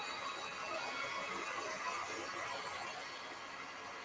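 Wagner heat tool blowing hot air at an even, steady hiss, melting silver embossing powder on metallic cardstock.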